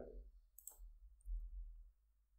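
Faint computer keyboard clicks as code is typed, with one sharper key click about two-thirds of a second in, over a low steady hum.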